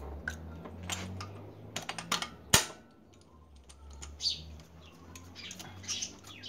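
Irregular metallic clicks and taps from a ratchet wrench and extension being worked in the spark-plug wells of a Chevy 1.6 engine, with one sharp clink about two and a half seconds in.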